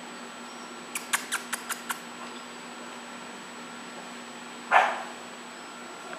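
A dog barks once, short and sharp, near the end: the loudest sound. About a second in there is a quick run of six sharp clicks.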